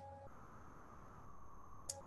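Near-silent room tone over a video-call connection: a faint hiss with a thin, steady high-pitched whine, and one short click just before the end.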